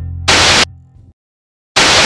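Two short, loud bursts of TV-style static hiss, a glitch sound effect in a channel intro. The first comes about a third of a second in, over a low held synth note that fades away. After a moment of dead silence, the second comes near the end.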